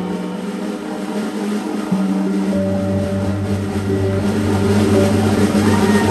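Live band of cigar box guitar, electric bass and drums sustaining slow held chords as a song winds to its close, a low bass note coming in about two and a half seconds in.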